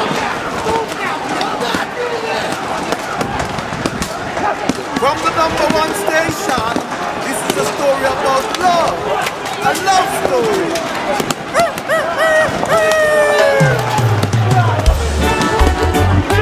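Film soundtrack music mixed with many overlapping voices crying out in rising and falling glides, with no clear words. A deep bass line comes in about two seconds before the end.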